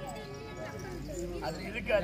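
Faint voices with no drumming, and a man's voice calling out in a rising and falling line near the end.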